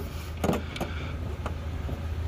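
Air-suspension compressor running on with a steady low hum, with a few light clicks and knocks from hands on the tank fitting. It will not shut off: the owner thinks a leaking fitting at the tank is keeping the pressure switch from cutting it out.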